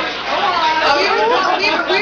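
Speech only: women talking.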